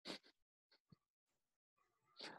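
Near silence: a pause in a conversation, with one brief faint sound right at the start and a tiny tick a little before one second in.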